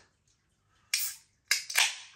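Ring-pull of an aluminium beer can of carbonated IPA being cracked open: a sharp crack and hiss of escaping gas about a second in, then a second, longer hiss about half a second later as the tab is pushed fully open.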